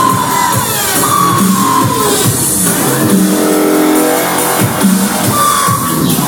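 Loud electronic dance music from a live DJ set over a club sound system, with a steady beat, a synth line near 1 kHz and a rising sweep about halfway through.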